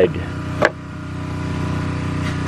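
A steady low hum of a running motor, with a single sharp click a little over half a second in.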